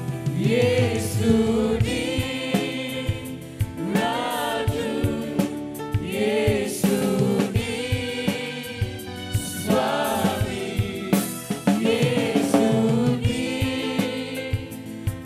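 Live gospel worship song: a man singing lead into a microphone with backing vocals and a band including bass guitar, with a steady beat of percussive hits.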